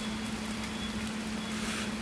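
A steady low machine hum, one constant pitch, over an even background hiss.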